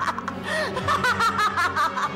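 A woman laughing loudly in quick repeated bursts, the gleeful evil laugh of a scheming villain.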